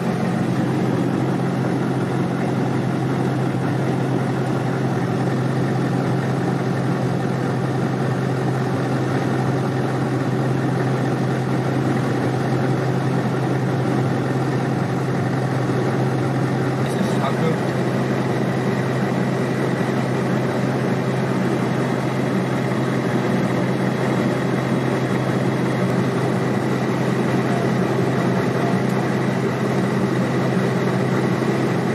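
An engine idling steadily, a constant low hum heard from inside a military vehicle's cab.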